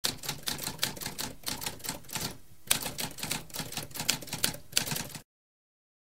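Typewriter keys typing, a rapid run of clacks at several strokes a second, with a brief pause a little past two seconds and a louder strike just after it. The typing stops about five seconds in.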